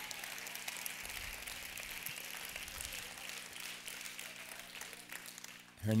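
Congregation applauding: a steady patter of many hands clapping that fades away just before the end.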